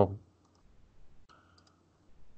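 A word ends just as it starts, then a few faint computer mouse clicks: a couple about half a second in and a couple more near the end.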